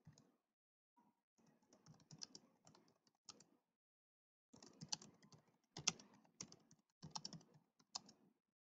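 Faint typing on a computer keyboard: quick runs of keystrokes in two bursts, with a pause of about a second between them.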